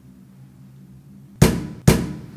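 Two loud knocks on a metal door, about half a second apart, each ringing briefly in a hard-walled hallway.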